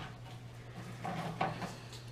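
Faint handling sounds of containers on a table, with one light knock about one and a half seconds in, over a steady low hum.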